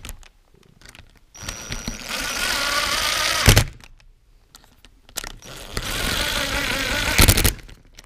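A cordless drill-driver runs in two bursts of about two seconds, each ending in a sharp clack. It is driving threadlocked bolts into a motorcycle clutch basket, which are only snugged and not yet fully tightened.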